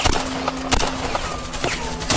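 A few sharp, scattered gunshots and bullet hits in a staged firefight, with a couple of short falling whines between the shots.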